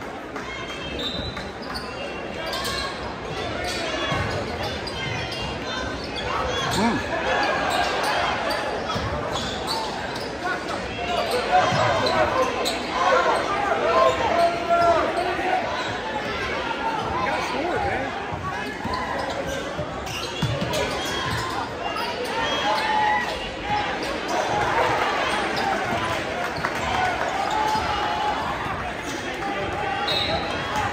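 Basketball bouncing on a hardwood gym court under the steady chatter and calls of a large crowd of spectators, the crowd getting louder for a few seconds in the middle.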